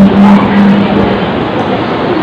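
Singing through a PA system with musical accompaniment: a long held note that fades out a little past a second in, leaving the accompaniment.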